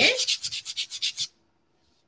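Quick back-and-forth strokes of a sanding block on a painted wooden frame, about ten strokes a second. The sanding stops a little over a second in.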